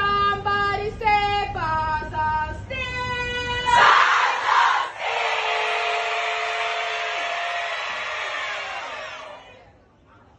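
Steel pan band playing a run of struck chords, the metal notes ringing; about four seconds in the music stops and a crowd of students cheers and screams, the cheering fading out near the end.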